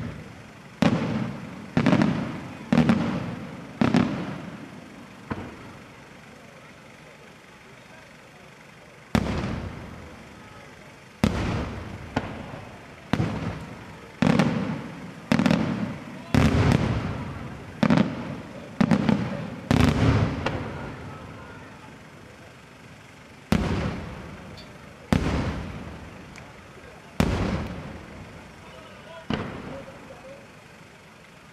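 Aerial firework shells bursting one after another, each a sharp bang followed by a long echoing rumble that dies away. After the first handful there is a lull of a few seconds, then a quick run of bursts, then a few more spaced out near the end.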